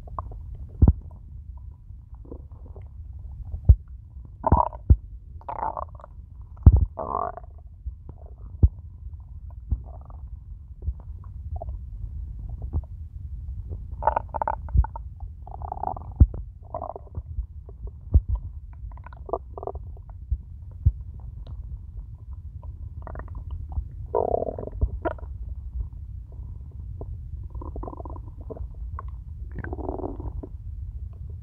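A hungry, empty stomach growling and gurgling: a steady low rumble, with spells of bubbling gurgles and sharp little pops scattered through it.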